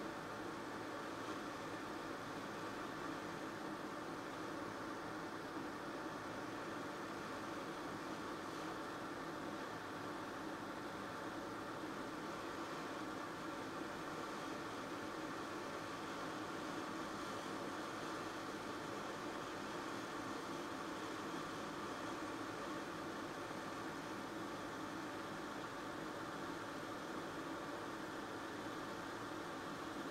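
Hot air rework station blowing steadily at low airflow (ten percent, 380 °C) while reflowing corroded surface-mount solder joints: an even, unchanging hiss.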